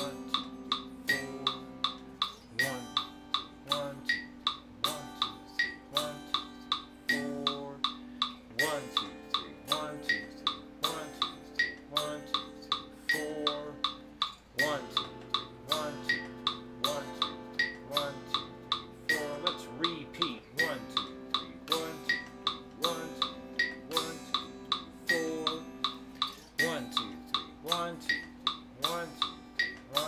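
Electric guitar playing slow chords of a seventh-chord exercise (Cmaj7, Em7, Dm7, Bm7♭5), each chord struck and left to ring, over a metronome clicking steadily at about two to three clicks a second.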